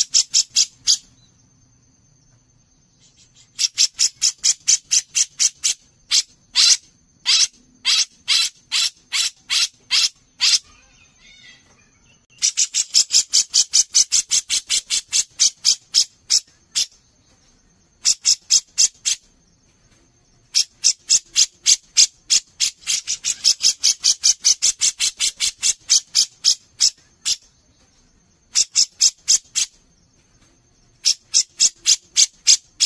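Grey-cheeked bulbul (cucak jenggot) calling in bouts of rapid, harsh, evenly spaced notes, several a second, each bout lasting one to seven seconds with short pauses between. A faint steady high tone runs underneath.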